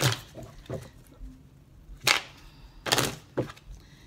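A deck of oracle cards being handled and shuffled: several short, sharp rustling snaps at uneven intervals, the strongest about two and three seconds in.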